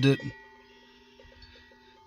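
The end of a spoken word, then a faint steady hum with a few soft ticks.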